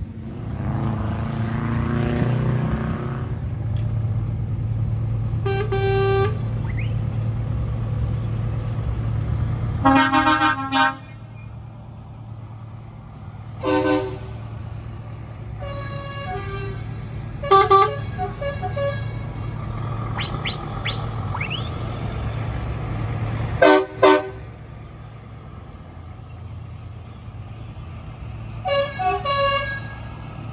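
Heavy trucks driving past with their diesel engines running, the engine drone loudest in the first ten seconds. Truck horns sound in short blasts about eight times, the loudest a little after ten seconds in.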